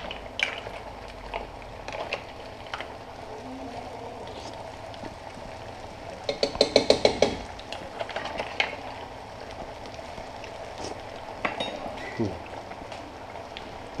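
Mussel shells clinking and scraping as they are stirred in a pan with a metal spoon, over the steady hiss of a simmering sauce. A quick run of about eight clatters comes about six seconds in.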